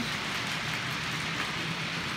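OO gauge model trains running on the layout: a steady hiss of wheels on the track with a faint low hum underneath.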